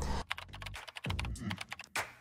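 A quick, irregular run of computer-keyboard typing clicks.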